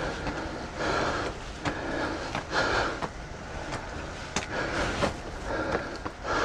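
Footsteps on stone stairs with the hard breathing of someone climbing, a breath every couple of seconds.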